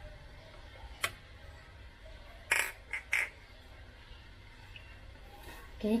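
A plate knocking and scraping against the rim of an aluminium saucepan as cornstarch is tipped into the liquid: a light click about a second in, then two short, louder knocks about half a second apart near the middle, over a low steady hum.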